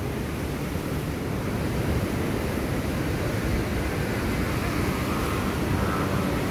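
Steady rushing and churning of turbulent water spilling over a concrete weir sill.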